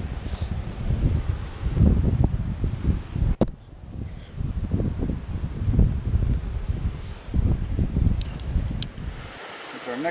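Wind buffeting the camera microphone in irregular gusts, a low rumbling that rises and falls, with a sharp click about a third of the way in and a few light clicks near the end.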